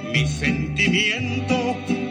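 Ranchera song playing from a vinyl LP on a turntable: a mariachi-style band with a bass alternating between two notes under a high melody with heavy vibrato, in the gap between sung lines.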